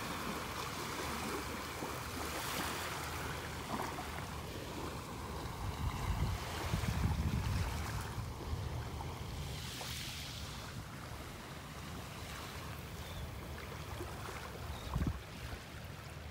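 Small waves from a calm sea washing gently onto the beach as the tide comes in, a steady soft wash, with a low rumble on the microphone swelling about halfway through.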